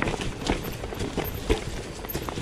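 Mountain bike rolling down a rocky trail: tyres crunching over loose stones and the bike rattling, with irregular knocks and clunks about every half second over a steady low rumble.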